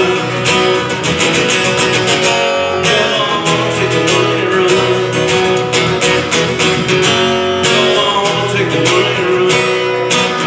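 Two acoustic guitars strummed together in a steady rhythm, playing live.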